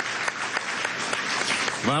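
Audience applauding, many hand claps blending together; a man starts speaking near the end.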